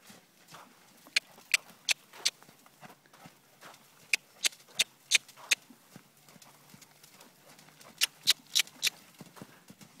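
Hoofbeats of a loose Belgian Warmblood horse trotting on an arena surface: three runs of about four sharp strikes each, roughly three a second.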